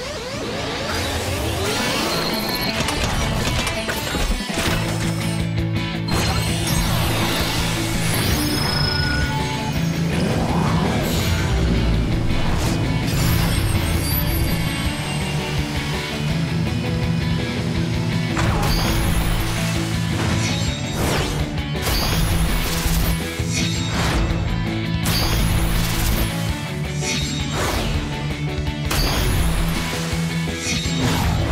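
Cartoon transformation-sequence sound effects: a run of mechanical clanks and crashes over steady, driving background music as a robot dinosaur turns into a vehicle.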